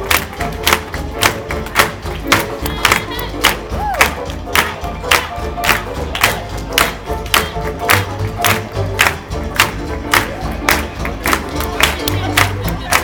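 Hot jazz band playing an uptempo swing number, with a crowd cheering and clapping along in time, sharp beats falling evenly through the music.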